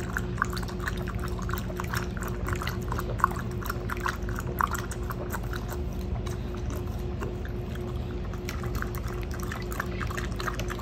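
Havanese dog lapping water from the trough of a handheld dispenser bottle, in quick wet laps several a second that thin out in the second half.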